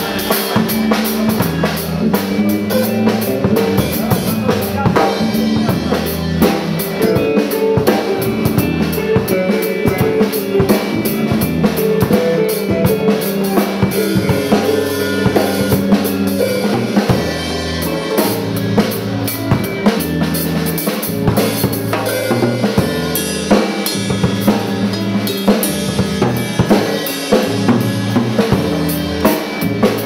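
Instrumental rock music: a drum kit with kick and snare drives a steady beat under electric guitar and bass guitar, with no singing.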